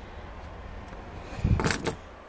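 A clunk and short rattle about one and a half seconds in, as a Honda Pilot's folding rear seatback is pushed down into the cargo floor, over low handling rumble.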